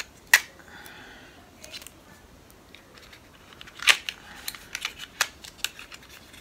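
Sharp plastic clicks from a small cosmetic highlighter case handled by fingers as it is worked open: one loud click just after the start, another about four seconds in, then a quick run of lighter clicks.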